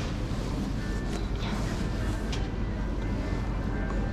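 Supermarket ambience: a steady hum and hiss of the store with faint background music, and a few light clicks.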